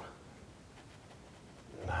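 Faint dabbing and scraping of a small paintbrush on stretched canvas over low room tone; a man's voice comes in near the end.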